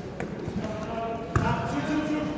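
A basketball hitting hard: a light knock near the start, then a loud thud a little over a second in, with voices calling out on court.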